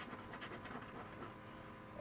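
A coin scraping the latex coating off a lottery scratch-off ticket in quick, faint rubbing strokes.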